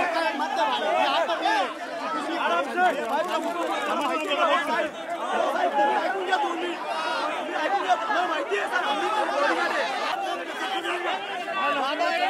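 A packed crowd of men talking and calling out over one another at close quarters: a steady din of many overlapping voices with no pause.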